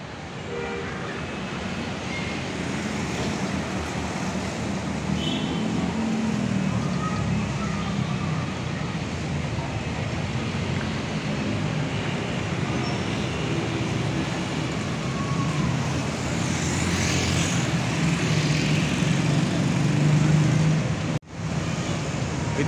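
Steady road traffic noise: passing vehicles' engines and tyres, with a low engine hum that grows somewhat louder toward the end.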